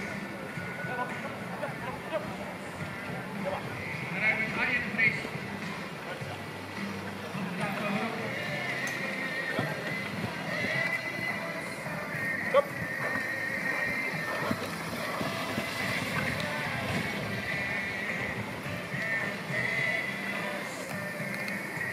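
Music and an unclear voice over a public-address loudspeaker, mixed with a horse and carriage passing through the course; a single sharp crack sounds about twelve and a half seconds in.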